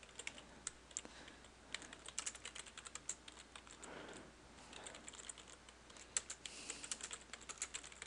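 Faint computer keyboard typing: a quick, irregular run of key clicks as a line of code is typed.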